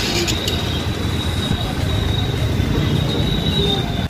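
Busy market street noise: a steady low rumble with a thin, high-pitched whine running through it.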